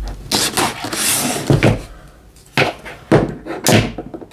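A cardboard subscription box being opened and handled: a scraping rustle in the first second or so, then several sharp knocks and thumps of the cardboard.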